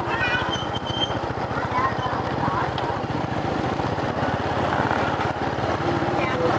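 Small motorbike engine running steadily at low speed, a fast even putter heard from the rider's seat.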